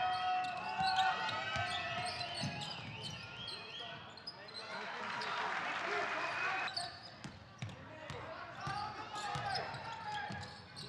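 Live basketball game sound in a sports hall: a ball bouncing on the hardwood court, mixed with voices and other court noise.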